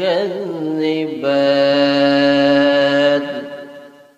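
A man's solo voice reciting the Quran in a melodic, chanted style into a microphone. Ornamented turns of the voice lead into one long held note about a second in, which dies away near the end.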